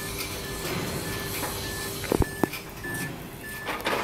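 Short electronic beeps repeating evenly over a steady low hum that stops a little before three seconds in. Two sharp knocks come a little after two seconds in.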